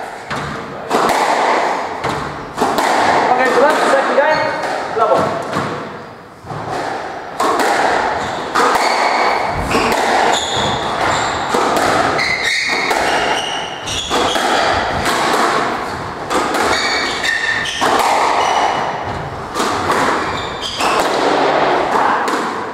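A squash rally: the ball striking rackets and the court walls again and again at irregular intervals, echoing in the enclosed court, with short high squeaks of shoes on the wooden floor.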